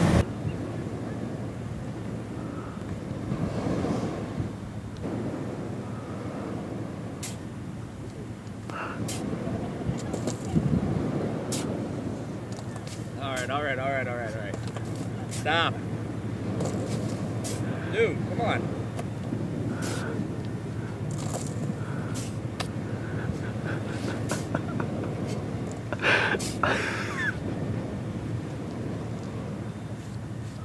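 Beach ambience: a steady rush of wind and surf, with brief, indistinct voices about midway and again near the end, and a few light clicks.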